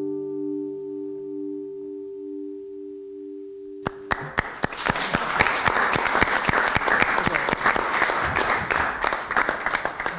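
The final guitar chord rings out and fades, one note pulsing evenly. About four seconds in, a small audience and jury break into applause, many hands clapping steadily.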